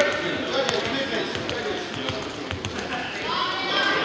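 Indistinct voices talking, with scattered thuds and knocks in between and the talk picking up again near the end.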